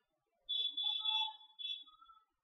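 A high-pitched steady tone like a whistle or alarm, sounding for about a second and then again briefly, with weaker lower tones under it.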